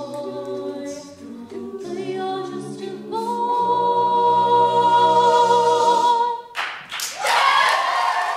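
Mixed a cappella choir singing sustained closing chords, a female soloist holding a long high note over the group. About six and a half seconds in the singing stops and the audience bursts into applause.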